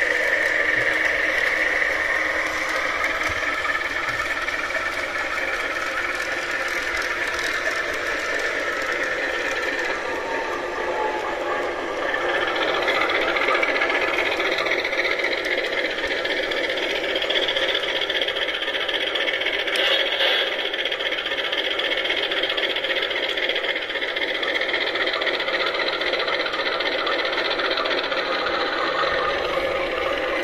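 Simulated diesel-locomotive engine sound from a model-train DC controller's built-in sound module, played through its small speaker, mixed with the HO-scale CC201 model locomotive running on the track. The sound runs steadily and gets louder and higher about twelve seconds in.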